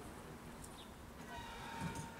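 Faint ambient noise, with a faint steady high whine coming in about two-thirds of the way through.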